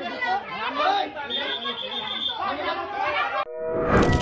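Many men's voices talking and shouting over one another in an agitated crowd, with a police whistle blown steadily for about a second midway. Near the end the voices cut off and a rising whoosh leads into a music jingle.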